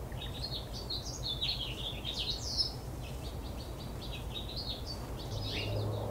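Small songbirds chirping in quick, short notes of varying pitch, busiest around the middle, over a steady low background rumble; a low hum comes in near the end.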